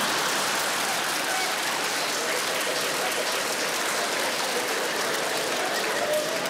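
Studio audience laughing and applauding, a dense, even clapping at a steady level.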